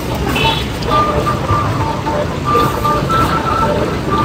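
Steady low background rumble with a faint tune of short held high notes at changing pitches playing over it.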